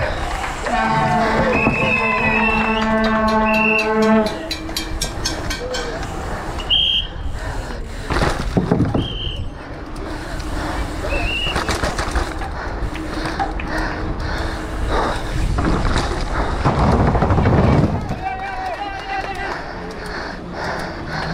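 Commençal Meta SX downhill mountain bike ridden fast down an urban course, its tyres, chain and suspension clattering over pavement, cobbles and stairs against steady rushing wind noise. A held horn note sounds about a second in and lasts about three seconds, amid spectators' shouts.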